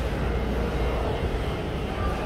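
Steady low rumble of movement and handling noise on a phone microphone carried while walking.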